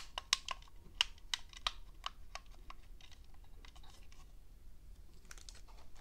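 Light plastic clicks and taps from handling the Makerfire Armor 65 Lite's small plastic transmitter as its sticks are worked: a quick run of sharp clicks over the first three seconds, then a few scattered ones and a short cluster near the end.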